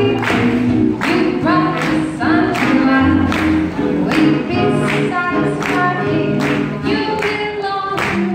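Live swing jazz band playing an up-tempo swing tune for lindy hop dancing, with a steady beat of about two strokes a second.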